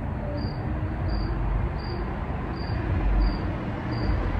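A cricket chirping at a steady pace, about one short high chirp every two-thirds of a second, over a steady low rumble of background noise.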